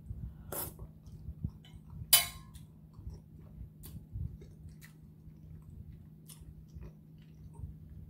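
A person chewing a mouthful of seafood boil in garlic butter sauce, with scattered wet mouth clicks and smacks. One sharper click comes about two seconds in.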